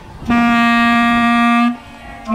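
Clarinet playing one steady held low note, about a second and a half long, starting a moment in and cut off just before the end.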